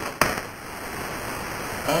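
A single sharp click, then a steady hiss of noise that slowly grows louder.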